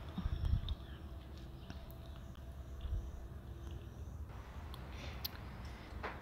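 Faint low rumble with a few soft thumps and clicks: handling noise from a handheld camera moving close around the motorcycle's engine.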